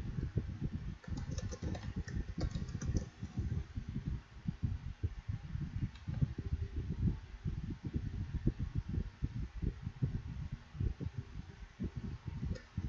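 Typing on a computer keyboard: a steady run of irregular, dull keystroke knocks, with a burst of sharper key clicks about one to three seconds in.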